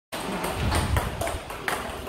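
Table tennis balls fed by a table tennis robot, clicking sharply off the table: several short, light clicks at irregular spacing, over a low rumble.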